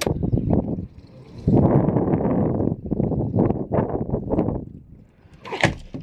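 Wind gusting across the camera microphone in a snowstorm, a rough low rumble that comes in uneven bursts, strongest for about a second near the middle.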